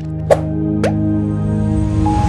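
Logo jingle: a held musical chord with three quick rising blips in the first second, ringing on steadily.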